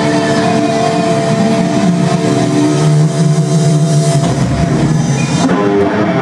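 Heavy metal band playing live through loud amplification: distorted electric guitars holding sustained notes over a drum kit.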